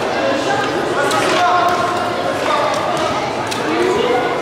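Indistinct voices echoing in a large sports hall, with a few sharp knocks of baseballs thrown in a game of catch.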